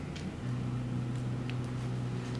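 A steady low hum sets in about half a second in, with a few faint soft ticks from a plastic spatula spreading and tapping down cream cheese and pineapple filling on a layer of pound cake.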